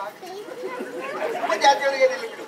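Speech only: a man talking in stage dialogue, with other voices chattering behind.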